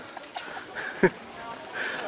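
Street ambience: faint chatter of passers-by, with one short sharp sound about a second in.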